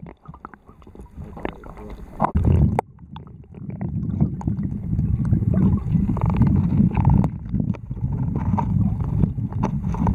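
Muffled, churning water rumble with scattered knocks and gurgles, heard from underwater as a bucket of stocked brown trout is dipped into the stream and the fish are let out. There is a louder surge about two and a half seconds in, and the rumble grows heavier and steadier from about four seconds on.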